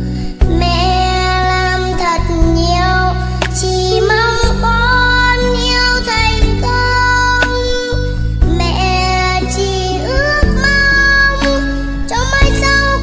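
A young girl singing a Vietnamese song about her mother in long held phrases, over a backing track with a steady bass line.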